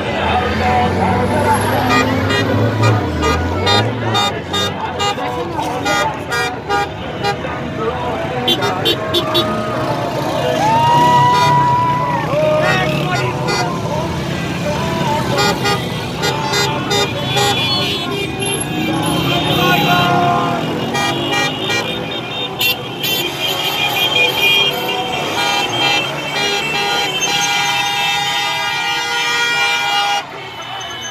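Many car horns honking together in celebration, several steady blaring tones overlapping, over passing car and motorcycle traffic and people shouting. The honking is densest in the second half.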